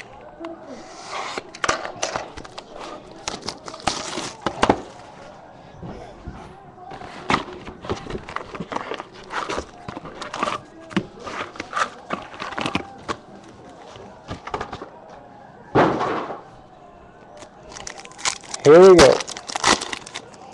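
Foil wrappers of 2013 Bowman Chrome baseball card packs being torn open and crinkled by hand, with cards handled and shuffled: a run of short sharp crackles and rustles, with a louder rustle a few seconds before the end.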